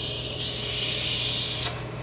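An aerosol can spraying in one steady hiss that cuts off shortly before the end, heard through a phone's speaker.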